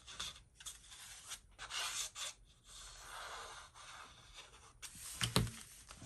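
Faint rustling and scraping of cardstock being handled as glue is run under the lifted front panel and the panel is pressed down onto the card, with one short sharp knock near the end.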